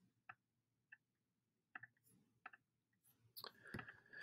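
Near silence broken by about six faint, scattered computer mouse clicks as colours are picked in the drawing program.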